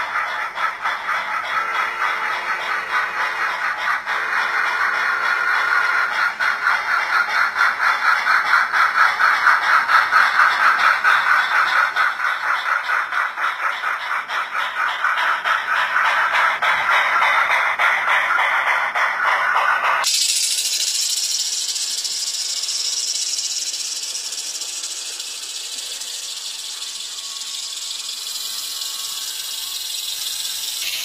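Sound decoder in an HO scale brass steam locomotive playing fast, rhythmic exhaust chuffs as the model train runs. Two short whistle blasts come about two and four seconds in. About twenty seconds in the chuffing stops abruptly and a steady high steam hiss takes over.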